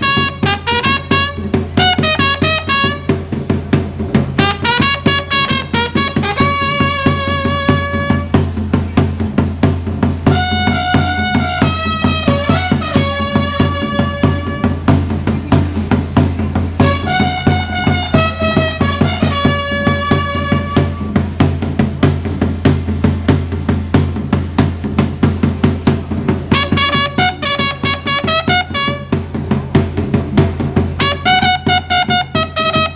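Chirimía band music: a trumpet plays a tune in short phrases with pauses between them, over a steady beat on a tambora bass drum. For several seconds after the two-thirds mark only the drum is heard before the trumpet comes back in.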